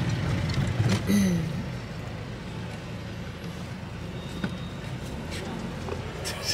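Steady low rumble of the van's engine and road noise, heard from inside the cab while driving in city traffic. A short voice-like sound comes about a second in.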